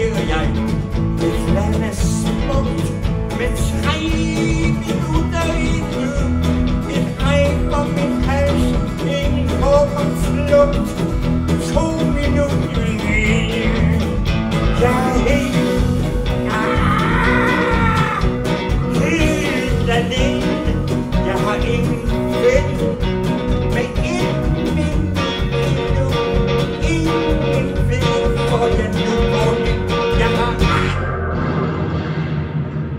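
Live band playing a song: drums, bass, electric and acoustic guitars, keyboards and organ, with a man singing over it at times.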